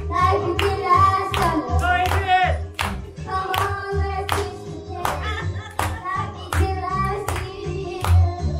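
A child singing a song into a microphone over a backing track. A steady beat of sharp hits comes about twice a second.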